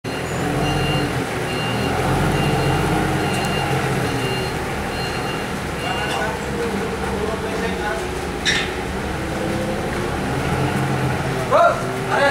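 Forklift engine running steadily as it moves a heavy load, with its backup alarm beeping about once a second through the first half. A brief high cry or whistle sounds about two-thirds of the way in, and men's voices start near the end.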